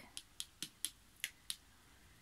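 Six light, quick clicks over about a second and a half: fingernails tapping on the cards of a spread laid out on a cloth.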